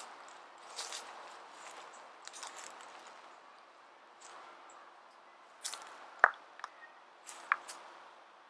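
Faint footsteps and rustling as a person walks past, with a few short sharp clicks in the second half.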